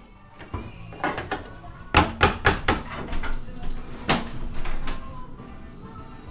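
A series of sharp wooden knocks and bangs from a kitchen wall cabinet being worked loose for removal: a cluster of hits between about one and three seconds in, and single ones about four and five seconds in.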